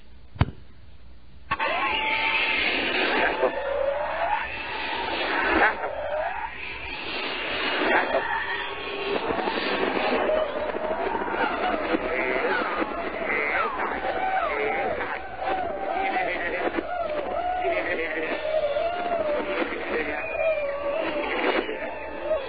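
A click, then a rock recording played back: a man's garbled singing with screaming behind it, which the preacher claims hides the repeated words 'He is God'. The playback starts about a second and a half in and stops just before the end.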